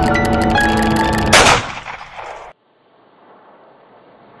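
Film-trailer music with held pitched notes and quick bell-like strikes, ending about a second and a half in on one loud boom-like hit. The hit dies away and cuts off abruptly, leaving faint hiss.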